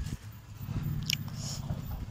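Irregular low rumbling and crackling from a phone's microphone carried by someone walking on a dirt path, with one short sharp click about a second in.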